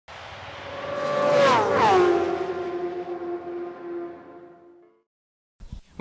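Intro sound effect of a high-revving racing motorcycle engine passing by: it swells, its pitch drops in a whoosh about one and a half to two seconds in, then the steady tone fades out by about five seconds.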